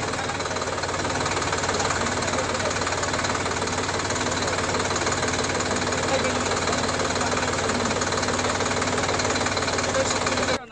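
A tractor's diesel engine idling steadily, with several people talking around it.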